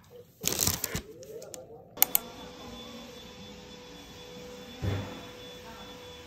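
A short burst of rustling and crunching handling noise, then two sharp clicks about two seconds in. After that comes a steady room hum, with a soft low thud about five seconds in.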